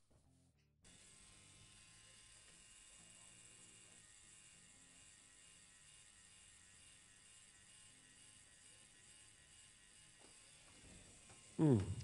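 Faint, steady buzz of a tattoo machine at work, starting about a second in.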